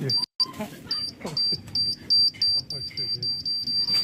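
A bomb-countdown sound effect played through a phone's speaker: a high electronic beep repeating faster and faster. Voices cry out 'oh' over it.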